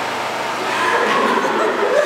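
High-pitched, wavering human vocalizing, as in giggling and squealing.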